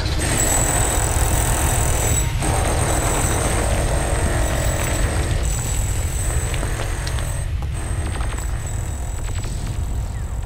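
A deep, steady mechanical rumble from a heavy drilling-machine sound effect, with dramatic background music under it, slowly fading out toward the end.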